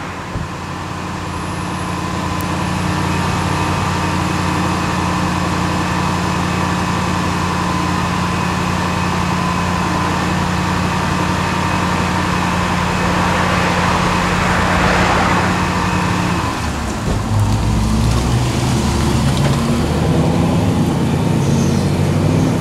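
A Range Rover SUV's engine idling with a steady hum, then pulling away about seventeen seconds in, the engine note dropping and turning uneven as it drives off. Street traffic swells briefly about fifteen seconds in.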